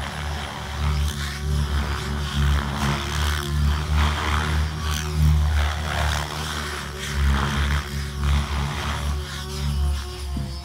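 Radio-controlled helicopter flying, its rotor and motor sound swelling and fading over and over as it manoeuvres.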